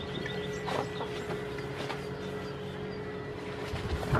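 A few light taps, typical of goat kids' hooves on wooden boards, over a steady low hum.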